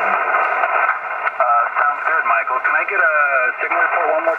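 Amateur HF transceiver's speaker playing a distant station's voice reply, narrow and muffled, over a steady hiss of band noise; the voice comes up out of the hiss about a second in.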